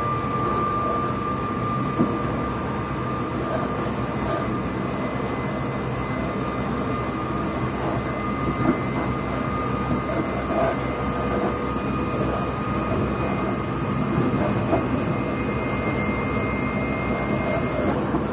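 Inside an electric passenger train running at speed: a steady rumble of wheels on the rails with a constant high-pitched whine, and a couple of sharp knocks from the track.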